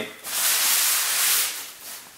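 Packaging rustling as a long, heavy LED light bar is pulled out of it: one steady, high, swishing slide lasting about a second, then fading.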